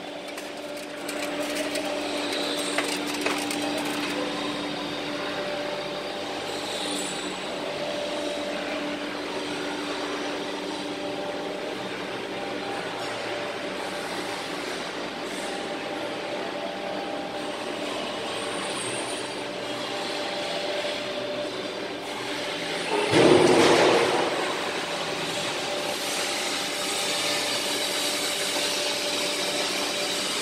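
Pit-type gas carburizing furnace machinery humming steadily, with a few held tones, as the furnace lid is lowered and closed. A louder rushing noise lasts about a second, a little over three-quarters of the way through.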